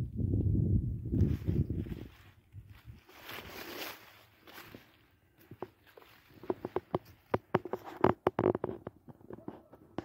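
Footsteps crunching through dry cut brush and dead stalks, with many sharp crackles of twigs and leaves in the second half. A low rumble on the microphone fills the first two seconds.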